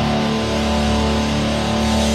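Heavy rock music led by electric guitar, holding sustained, ringing chords.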